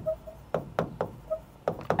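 A pen tip tapping and knocking on a writing board's surface as words are written by hand: about half a dozen short, sharp clicks.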